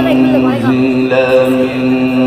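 A male qari's Quran recitation (tilawat): a melismatic vocal line with quick ornamental pitch turns, settling into one long held note.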